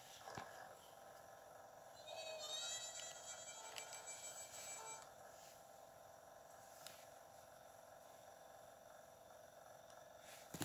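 A short musical jingle, about three seconds long, from a portable DVD player's small built-in speaker as the disc menu loads; otherwise only a faint steady hum.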